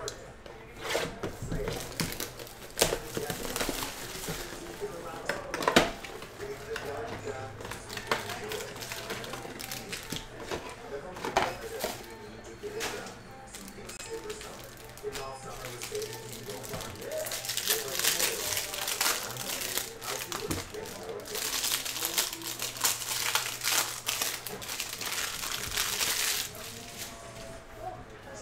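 Plastic packaging and foil card packs crinkling as a trading-card box is unwrapped, with small clicks and taps of cards being handled. There are two longer spells of crinkling, one a little past the middle and one toward the end.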